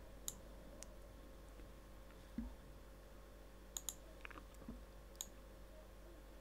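Faint computer mouse clicks, a handful of sharp single clicks with a quick double click near the middle, over a faint steady hum, with a couple of soft low thumps between them.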